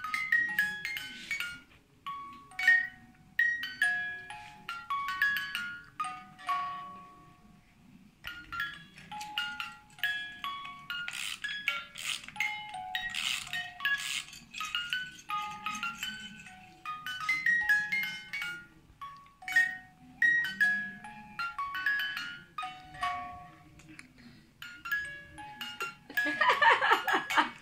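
A simple tinkling electronic tune of single bell-like notes from a baby's musical play-gym mobile. The tune thins out briefly about seven seconds in.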